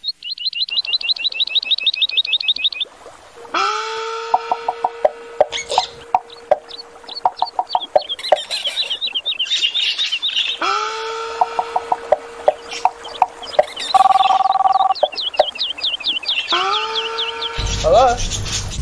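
Birds calling: a fast run of high chirps, then a lower call that rises and holds, heard three times with more high chirping over it.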